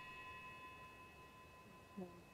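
Near silence, with a faint steady high tone that fades out over the first second and a half.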